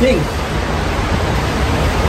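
Heavy wind-driven downpour: a steady, loud rushing with a low rumble underneath.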